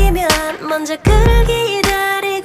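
K-pop song: a female voice sings a Korean lyric line in held, gliding notes over a beat with a deep kick drum about once a second.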